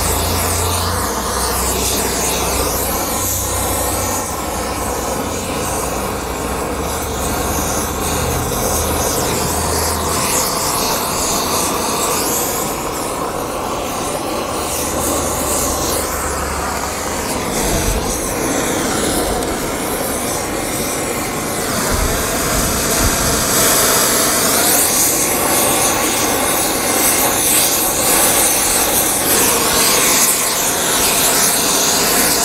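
Gas torch flame running steadily, a continuous rushing hiss with no break, as a cast bearing housing is preheated to about 300–400 °F before babbitt is poured.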